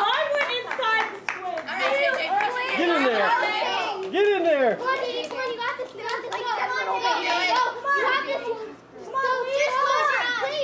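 Several children's voices talking and calling out over one another, overlapping so that no words can be made out.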